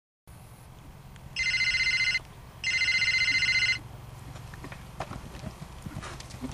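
An electric bell rings twice, a short ring and then a longer one, each a loud buzzing trill. Faint knocks follow near the end.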